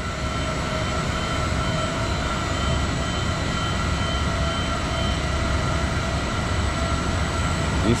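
Steady rumble and hum of airport baggage-conveyor machinery just after an emergency-stop reset and restart, with a faint on-and-off high beep for a few seconds midway.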